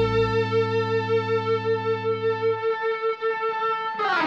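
Overdriven electric guitar, a Gibson Les Paul through a Marshall Guvnor pedal, holding one long note with slight vibrato at the end of a solo; the note just doesn't want to go away. Lower backing notes stop about half a second in and again around two and a half seconds in.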